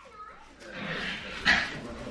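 A small dog whimpering faintly, with low murmuring and a short noise about one and a half seconds in.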